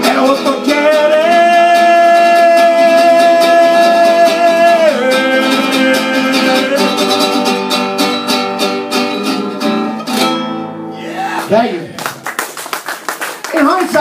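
Acoustic guitar strummed under a man's singing voice, which holds one long note near the start. The song ends about ten seconds in, and the strumming stops. Voices follow near the end.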